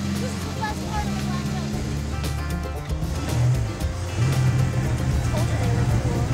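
Background music over the steady running of an open-cockpit vintage race car's engine as it drives along, with voices from the occupants.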